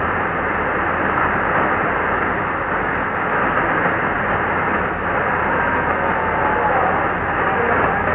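Weak shortwave AM broadcast from Radio Congo on 6115 kHz heard through a Kenwood TS-2000 receiver: steady, muffled static and hiss, with faint programme audio barely showing through the noise.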